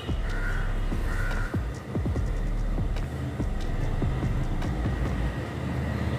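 Rice-flour batter sizzling in a hot nonstick frying pan as it sets, over a steady low rumble.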